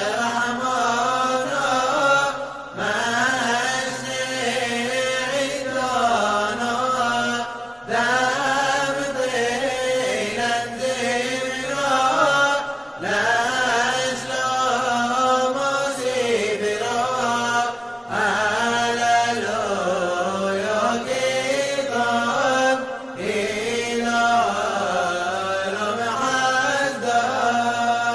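A male voice chanting a piyyut unaccompanied in the Yemenite style, in long ornamented phrases. There is a short breath break about every five seconds.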